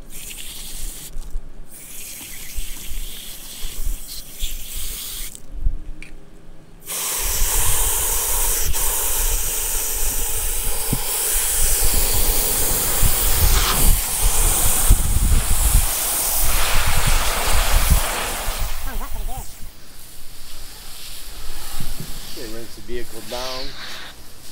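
Garden hose spraying water hard into a plastic wash bucket onto car-wash soap and a microfibre wash mitt: a loud, steady rushing that starts about seven seconds in and dies down about eighteen seconds in.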